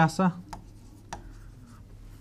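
Marker pen writing on a whiteboard: a few short, faint strokes and taps, after a spoken word ends right at the start.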